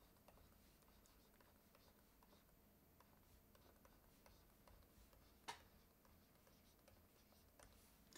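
Near silence with faint ticks and scratches of a digital pen writing on a screen, and one slightly louder tap about five and a half seconds in.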